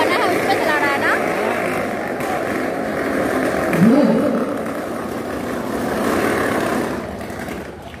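Motorcycle engines running inside a steel-mesh globe of death, a steady drone under crowd chatter and shouts. The sound eases off near the end.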